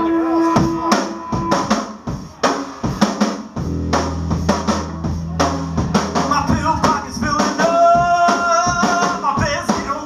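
Live band playing through a PA: a drum kit keeps a steady beat with bass drum and snare, under electric bass and guitar, with a sustained low bass note in the middle. A male lead vocalist starts singing into the microphone near the end.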